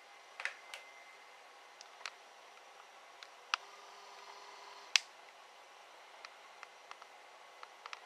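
Faint room tone with scattered small clicks and taps from a handheld camera being handled, the sharpest one about five seconds in.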